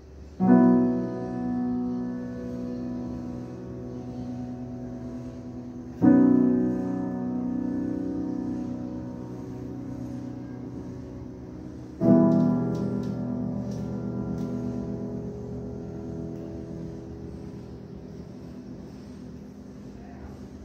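Grand piano: three loud chords struck about six seconds apart, each held and left to ring and slowly fade, the closing chords of a piece.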